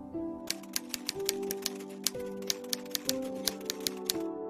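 Typewriter key-clicking sound effect: a quick, uneven run of clicks, about seven a second, starting about half a second in and stopping near the end, over soft sustained background music.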